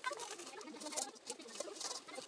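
Scrubbing and scraping of a metal cooking pot, with irregular scratchy strokes and sharp little knocks, the sharpest about a second in and again near the end, over the babble of a shallow stream.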